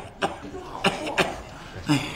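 A man coughing in short bursts, about four times, a sick man's cough.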